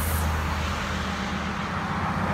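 Steady low rumble and hiss of outdoor background noise.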